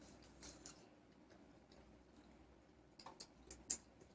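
Near silence with a few faint, short wet clicks of mouths biting and chewing ripe mango slices, a small cluster of them about three seconds in.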